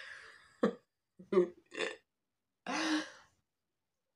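A woman's short, breathy laughs and exhalations, then one longer voiced exclamation near the end.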